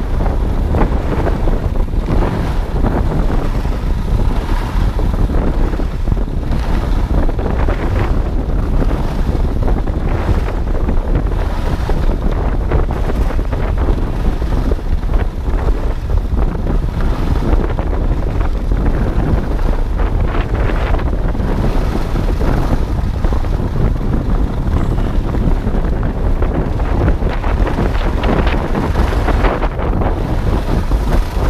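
Wind buffeting the camera's microphone as a skier runs down a groomed piste, with the skis hissing and scraping on the snow in uneven surges.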